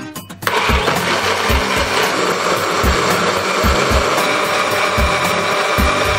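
Electric countertop blender switched on about half a second in, its motor running steadily as it grinds soaked soybeans and water into soy milk.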